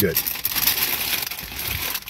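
Paper sandwich wrapper being handled and crinkled: a dense, irregular run of small crackles.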